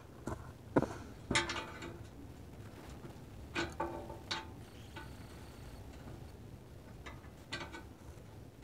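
Irregular clinks and knocks of metal framing parts and bolts being handled, about six in all, a few with a short metallic ring.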